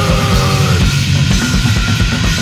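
Power violence punk recording from a vinyl LP: fast, pounding drums under heavily distorted guitar, with a few sliding guitar notes over the din.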